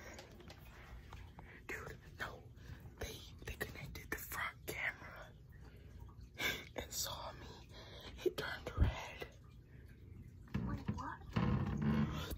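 Hushed whispering, broken up by short scattered rustles.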